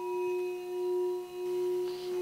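Clear crystal singing bowl ringing with one sustained tone and faint higher overtones, its loudness wavering slowly and evenly.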